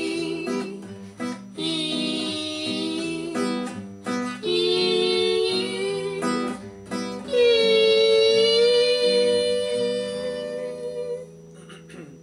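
Two nylon-string classical guitars playing chords while a man sings long, drawn-out held notes in four phrases. The last and loudest phrase starts about seven seconds in, and the music fades out about a second before the end.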